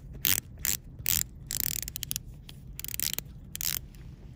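Panerai Submersible Chrono PAM 982 dive bezel being turned by hand, giving chunky ratcheting clicks. The clicks come in short, irregular runs with brief pauses between turns.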